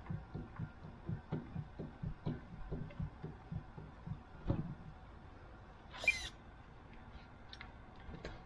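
A two-stroke .46 glow engine on a model aeroplane being turned over by hand to draw fuel up, giving a run of soft, uneven thumps two or three a second over the first four and a half seconds. A brief high squeak about six seconds in.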